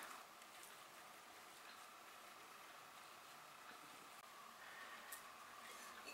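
Near silence: faint room tone with a thin steady hum.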